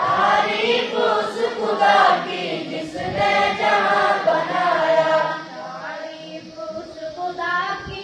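A large group of boys chanting a prayer together in unison, like a choir, growing softer about five seconds in.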